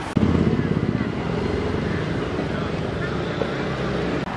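A motor vehicle engine running close by: a low rumble that starts suddenly, pulses for about a second, then runs steadily, with crowd voices faintly behind it.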